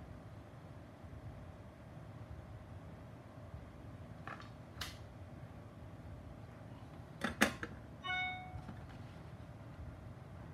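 A few sharp clicks from leads and connectors being handled on the bench, the loudest about seven and a half seconds in, followed by a brief electronic beep tone of about half a second.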